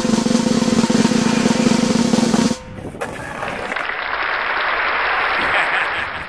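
Drum-backed music that cuts off about two and a half seconds in. It is followed by a rushing noise of skateboard wheels rolling on pavement, which grows louder and then fades near the end.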